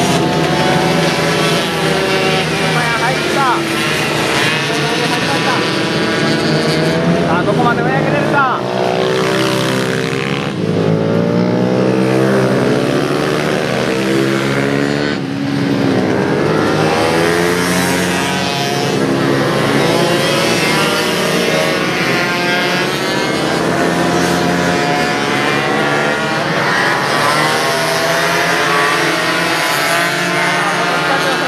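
A pack of small racing motorcycles passing and lapping, several engines revving at once, each rising and falling in pitch as the riders shift, brake and accelerate through the corners.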